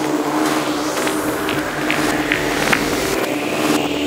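Psytrance track in a breakdown with no kick drum: sustained synth tones and noise, with a synth sweep slowly rising in pitch through the second half, building toward the beat's return.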